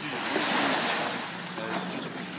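Small waves washing up onto a sandy shore, the rush of water swelling about half a second in and then easing off.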